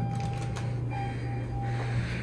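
An elevator car's steady electronic beep tone, held for almost two seconds with a short break about a second in, over a constant low hum. A few light clicks come early on as the car's buttons are pressed.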